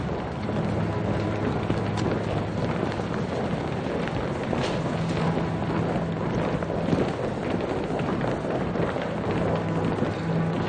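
Film soundtrack: a low, sustained music drone under the footsteps of a group of people walking on a hard tiled floor.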